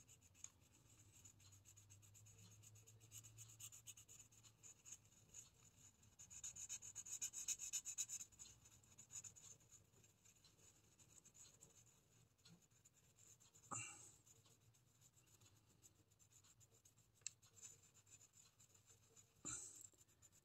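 Faint rubbing of a hollow rolled-paper blending stump smudging oil pastel on sketchbook paper, in short strokes that are loudest for a couple of seconds in the middle, with one brief stroke about two-thirds through; otherwise near silence.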